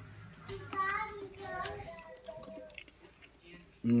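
A man eating a spoonful of soft mashed cauliflower and gravy, with a faint voice in the background. A loud, appreciative "mmm" comes near the end.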